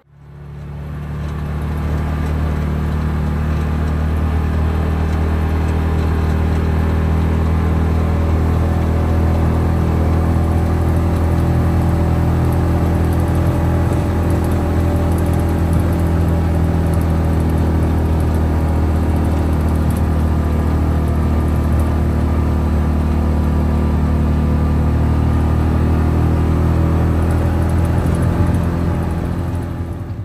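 Side-by-side UTV engine running at a steady speed while driving, a low, even drone that fades in over the first couple of seconds.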